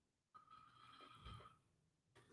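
Near silence: room tone, with a faint thin steady tone for about a second.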